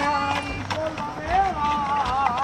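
A man singing a corrido unaccompanied, holding long, slightly wavering notes, over the clip-clop of a horse's hooves.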